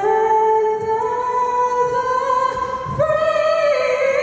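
A woman singing solo over a stadium's loudspeakers, holding long notes that step up in pitch about a second in and again near the three-second mark.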